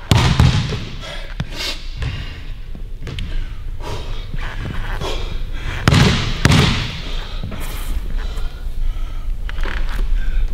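Basketball bouncing a few times on a hardwood gym floor before free throws, with single thuds spaced seconds apart and a stronger pair of bounces a little past the middle.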